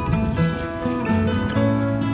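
Music led by a plucked acoustic guitar, its notes changing every fraction of a second.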